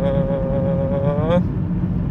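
A man holds one long vowel inside a Volkswagen Passat's cabin to let the vibration be heard in his voice, which the driver blames on a rear tyre with cracked, separated tread. The vowel stops about one and a half seconds in, leaving the steady low drone of road and engine noise at about 60 km/h.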